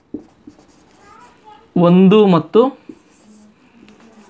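Marker pen writing on a whiteboard: faint scratching and squeaking strokes. A man's voice says a short phrase about halfway through and is the loudest sound.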